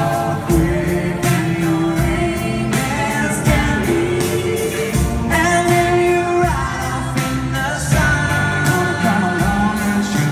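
Live band in an arena playing a country-rock song: sung vocals holding long notes over electric guitar and a steady drum beat, amplified through the PA.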